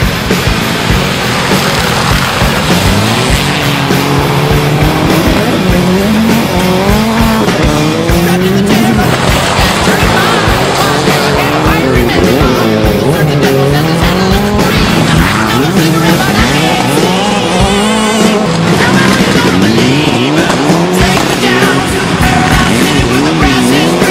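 Rally car engines revving hard as the cars pass on a gravel stage, the pitch repeatedly climbing and dropping through the gear changes, with background music.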